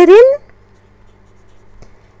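Pen writing on a paper pattern sheet, a faint scratching, with one small tick near the end.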